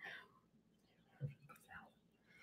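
Near silence with a couple of brief, faint, soft voice sounds, like a quiet murmur or whisper.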